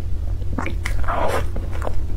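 Close-miked mouth sounds of chewing soft cream cake: wet smacks and short clicks, with a louder, longer wet burst about a second in, over a steady low hum.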